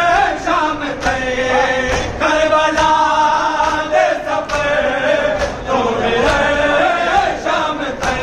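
A group of men chanting an Urdu noha (mourning lament) together, the sung line held and bending in pitch, with sharp chest-beats (matam) landing about twice a second.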